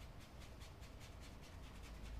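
Faint, scratchy strokes of a bristle paintbrush scrubbing paint across a canvas, a quick run of light strokes, several a second, as the paint is worked and softened into the surface.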